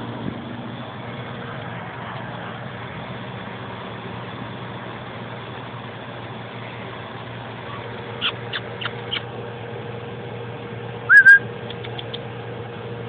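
Steady hum of an outdoor air-conditioner condenser unit running. About eight seconds in come four short chirps, and near the end a loud, clear two-note whistle.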